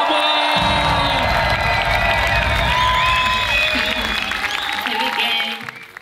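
A concert crowd cheering, whooping and screaming over loud music, fading out near the end.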